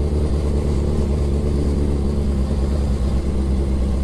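Suzuki Hayabusa's inline-four engine running steadily while the motorcycle is ridden at road speed, a constant low drone with road and air noise over it.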